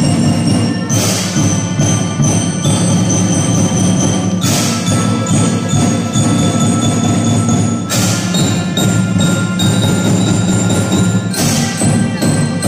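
A children's school drum band playing a tune: many melodicas and mallet keyboards such as a bell lyra over a steady drum beat. A cymbal crash comes about every three and a half seconds.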